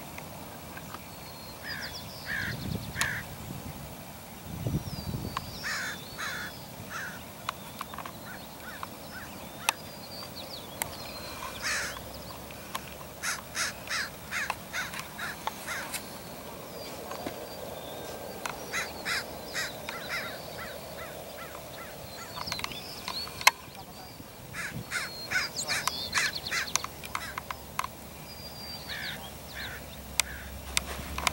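Birds calling: runs of short, harsh calls repeating in bursts over and over, with a few sharp clicks between them.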